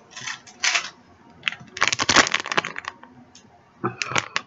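A shiny plastic blind-bag package crinkling as it is handled in the hands, with a louder run of crackling about two seconds in.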